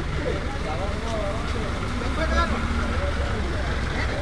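People talking at a distance over a steady low rumble.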